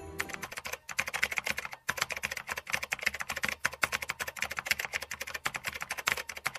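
Rapid keyboard typing, many keystrokes a second with two short pauses about one and two seconds in, heard as a typing sound effect over on-screen text.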